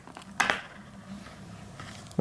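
A cable connector pulled off a computer logic board by hand, with one short scrape about half a second in.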